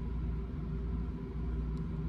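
Steady low background hum and rumble, with no other clear event.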